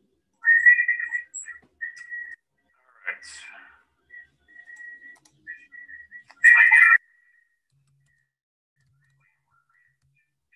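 A person whistling a string of short notes, with the loudest note about six and a half seconds in.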